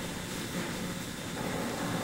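A quiet gap between speakers, filled only with a steady low hiss and hum from an old VHS recording of a TV broadcast.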